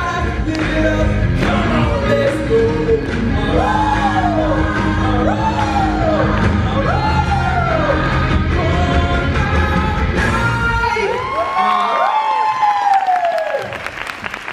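Live rock band with a male singer whose voice rises and falls in repeated howl-like arcs, about one every second and a half. About eleven seconds in, the band drops out and overlapping wolf-like howls are left on their own.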